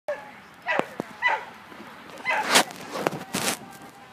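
A dog barking several times, sharp and loud, over a low background of outdoor crowd noise.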